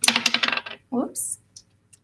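A quick run of clicks and rattles of small hard objects on a table, fitting dice being handled and rolled.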